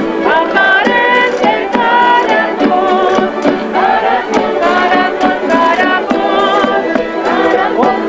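Canarian folk group playing: bandurrias or laúdes and guitars strummed and plucked over a drum beat, with voices singing a wavering melody.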